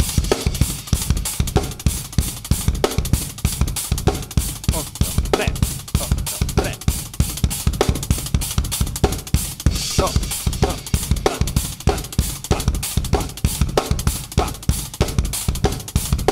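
Drum kit played solo in a fast, busy repeating ostinato of bass drum, snare and cymbals, the snare shifted to different places in the pattern while the rest of the groove keeps going.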